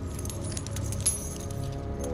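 Film soundtrack: light metallic jingling and clinking, with one sharp high clink about a second in, over a low rumble and faint music.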